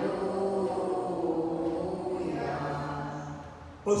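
Congregation singing the Gospel acclamation in slow, long held notes. The singing fades out just before the end.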